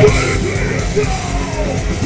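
Live death metal band at full volume: distorted electric guitars, drums and a harsh lead vocal into a microphone, the band hitting hard right at the start.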